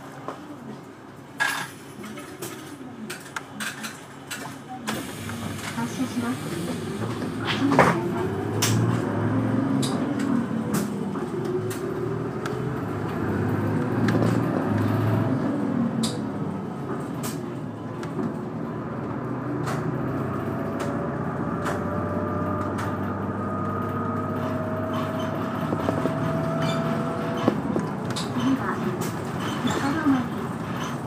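A route bus's diesel engine pulling away from a stop. It runs quietly at first, then its pitch rises and falls as it accelerates through the gears. It settles into a steady cruise with a whine and road noise, heard from inside the cabin with scattered rattles and clicks.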